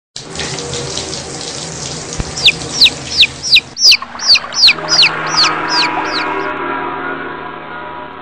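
Intro sound effect of running water with a bird calling over it: a string of about a dozen quick falling whistles, roughly three a second, in the middle. A steadier hum of held tones comes in under it and slowly fades toward the end.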